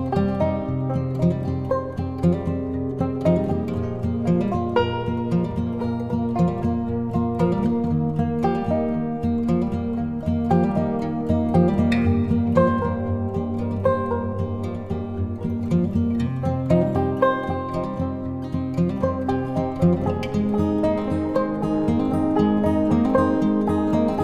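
Background music: plucked-string instrumental with many short, quick notes.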